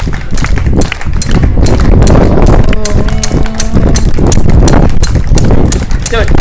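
Crowd clapping along in time, a steady, even rhythm of sharp claps over a loud low rumble of wind on the microphone, with a brief voice about halfway through.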